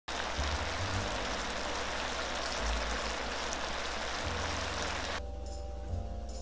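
Chicken wings sizzling in a pan of bubbling honey sauce, a steady sizzle that cuts off suddenly about five seconds in, over background music with a low bass line.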